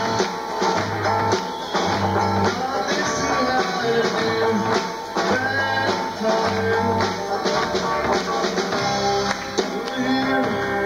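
A rock band playing live, with guitar and drum kit, in an instrumental passage without singing.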